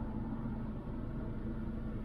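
2010 Kia Optima's four-cylinder 2.0-litre engine running, heard from inside the cabin as a steady low hum with road rumble.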